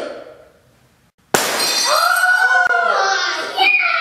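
A drinking glass frozen in ice hits the floor about a second and a half in and shatters in one sharp crash with scattering shards. Children's high-pitched shrieks follow straight after.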